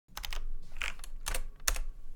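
Computer keyboard keystrokes: a quick, uneven run of clicks, the loudest one near the end.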